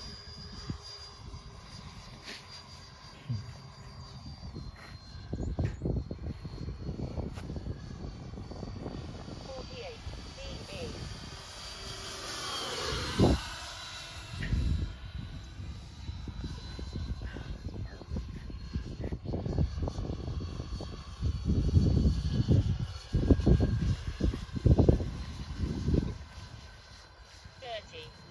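Twin electric ducted fans of a Freewing Me 262 RC jet whining steadily at low throttle. The pitch steps down a few seconds in and bends as the jet passes overhead about halfway through. Low gusty rumbling comes and goes and is loudest in the last third.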